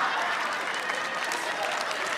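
Studio audience applauding steadily, easing slightly.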